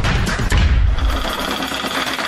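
News-channel intro theme music: fast, evenly repeated percussive hits over deep bass. About half a second in they give way to a sustained whooshing swell with a steady high tone.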